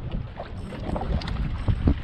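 Wind buffeting the microphone in an uneven low rumble over choppy water slapping against a boat hull, with a few soft knocks, the strongest near the end.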